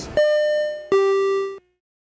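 Two-note descending ding-dong chime: a higher note, then a lower one, each ringing out before the sound cuts to dead silence.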